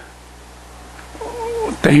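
A quiet stretch of faint scratching as chalk is written on a blackboard. Near the end, a man's drawn-out, rising hum leads into speech.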